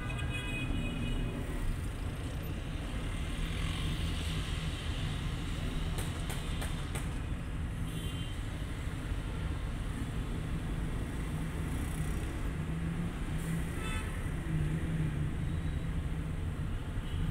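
Steady low rumble of a car's engine and street traffic, heard from inside the car's cabin, with a few faint clicks about six seconds in.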